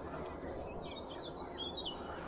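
A small bird chirping, a run of quick warbling notes starting a little before halfway through, over a steady low background rush.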